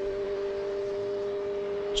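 A steady hum holding two unchanging pitches, over faint traffic noise.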